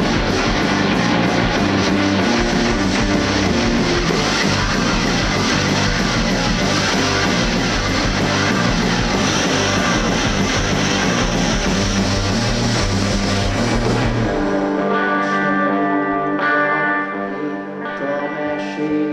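Live rock band playing an instrumental passage with loud electric guitar, bass and drums. About fourteen seconds in, the bass and drums drop out, leaving sustained held chords.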